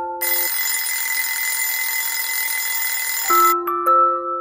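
An electric bell rings steadily for about three seconds, then cuts off suddenly. A light melody of single notes plays just before and just after it.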